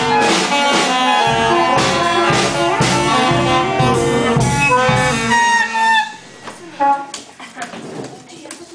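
A youth concert band of saxophones, clarinets, flutes and brass playing a piece together, which breaks off abruptly about six seconds in; after that only a few stray notes remain.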